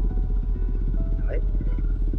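Doosan DX140W wheeled excavator's diesel engine idling steadily, heard from inside the cab as a low, even rumble while the machine stands waiting.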